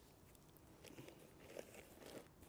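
Near silence, with a few faint rustles and clicks of gear being handled and taken out of a backpack.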